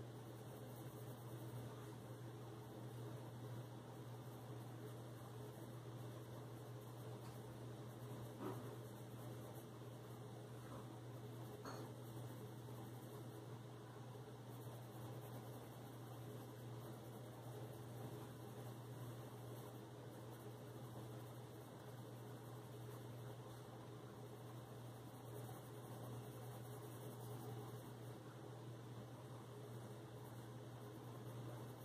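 Faint scratching of a colored pencil shading on paper over a steady low hum.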